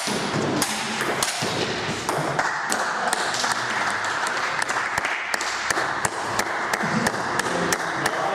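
Table tennis ball clicks of bat strikes and bounces, several sharp clicks a second, over a steady noisy hall background.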